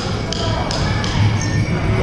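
Powwow drum struck in a steady beat, about three strokes a second, echoing in a gymnasium, with voices mixed in.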